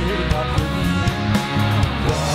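Live rock band with electric guitar, bass and drums playing a rock arrangement of a Taiwanese-language old song, with a male voice singing into a microphone over it.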